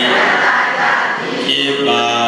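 A group of voices chanting together in a Buddhist recitation that accompanies the water-pouring libation of a donation ceremony. For the first second or so the chant blurs into a mix of voices, then settles back onto steady held notes about a second and a half in.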